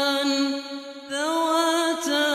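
A man reciting the Quran in a melodic chant, holding long drawn-out notes. The voice breaks off briefly about half a second in and comes back about a second in on a rising note.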